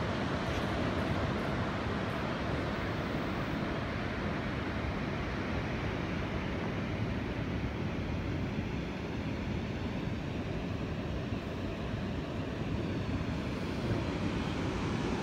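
Steady wind blowing across the microphone, with ocean surf washing in the distance behind it.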